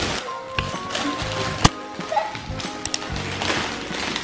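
Aluminium foil crinkling and tearing as it is pulled off a large chocolate egg, with one sharp crackle about one and a half seconds in, over background music.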